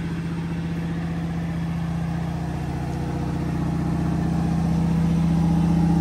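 1986 Oldsmobile Cutlass 442's V8 engine idling steadily, purring, growing a little louder in the second half.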